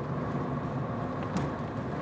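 Steady low engine and road rumble heard inside the cabin of a moving car.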